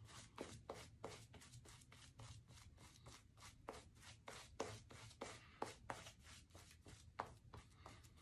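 Faint, rapid swishing and scratching of a shaving brush's bristles working shave-soap lather over a stubbly face, about four strokes a second. The lather is still fairly dry as water is painted into it.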